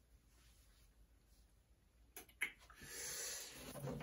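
Near silence, then about two seconds in a sharp click followed by a soft rustling of hands handling things on a work table.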